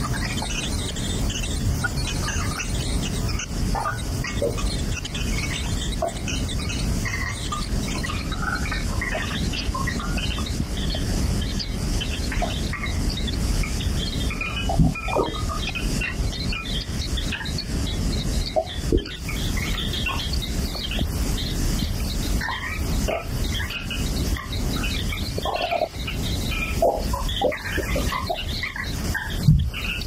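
Experimental electroacoustic noise music: a steady, dense low noise bed with short squeaks and squeals scattered through it.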